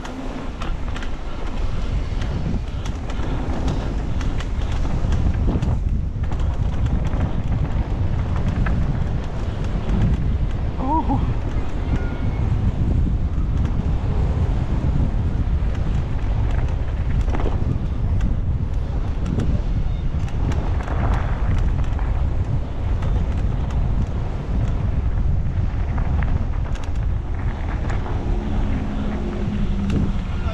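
Wind buffeting the camera microphone during a fast downhill mountain-bike descent. Under it are the bike's tyres rolling over the dirt trail and frequent rattles and knocks as it runs over bumps.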